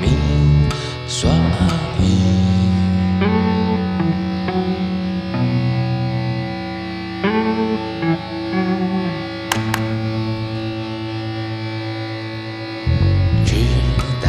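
Band music in an instrumental passage without singing: plucked, effected guitar notes over held low tones, with the fuller band texture dropping back early on and coming back in about a second before the end.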